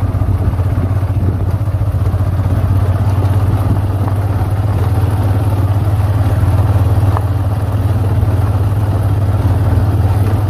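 Motorcycle engine running steadily at low speed, a constant low drone.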